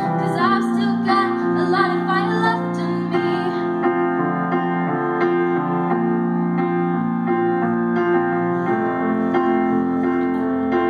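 Piano backing track playing through an amplified speaker, with a girl singing over it for the first two or three seconds. After that the piano carries on alone in slow, sustained chords.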